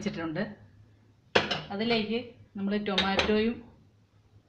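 Steel cooking pot being set down on a gas stove's metal pan support: a sharp metallic clank a little over a second in, and another clatter of metal on metal about three seconds in.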